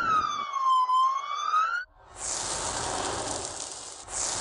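Ambulance siren sounding one slow wail, its pitch falling then rising again, cut off just before two seconds in. A steady high hiss follows.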